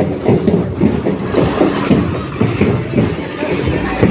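Loud street-procession din: a crowd's voices over a fast, regular beat of about three pulses a second.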